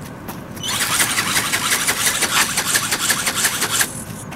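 A small ornithopter's brushless motor and gear drive running, its film wings flapping in fast, even pulses. It starts abruptly a little under a second in and cuts off just before the end.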